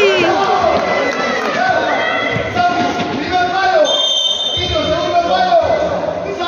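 Several voices of spectators and players shouting and calling out in a large indoor hall during a futsal game, with the thuds of the ball being kicked and bouncing on the hard court.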